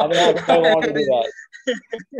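A man's voice heard over a video call for about the first second, with a croaky quality, then a few short, broken sounds near the end.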